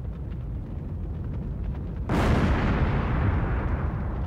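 A large fire on a ship's deck burning with a low rumble. About two seconds in there is a sudden loud burst, which carries on as a steady rush of noise.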